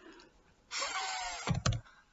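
A woman's breathy, drawn-out 'th' sound as the digraph of 'thank' is sounded out, followed by two quick sharp clicks as the letters are typed on a keyboard.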